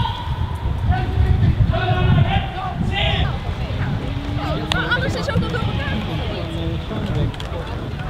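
Indistinct voices talking over a steady low outdoor rumble.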